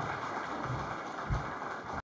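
Audience applauding steadily, with two low thumps, the louder one about a second and a half in.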